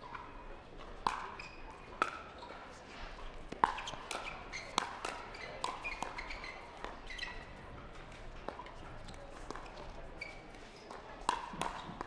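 Pickleball rally: about a dozen sharp, ringing strikes of paddles on a plastic pickleball, coming irregularly about once a second, the loudest a little past three and a half seconds in.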